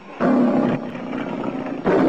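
The MGM logo lion roaring. A roar starts about a fifth of a second in, is loudest for about half a second, then carries on weaker, and another roar begins just before the end.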